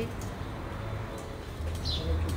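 Quiet outdoor background: a low steady hum, with a bird giving a short high chirp that falls in pitch near the end.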